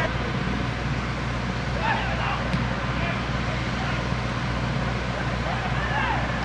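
Shouts of players on a football pitch in an empty stadium, a few short calls about two seconds in and again at the end, over a steady open-air hum.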